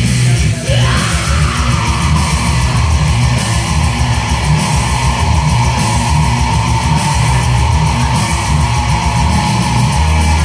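Heavy metal backing track with electric guitar under a male vocalist's single long, high held scream that slides up about a second in and then holds steady.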